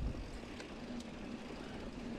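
Wind buffeting the microphone: an uneven low rumble under a steady hiss, with a few faint ticks.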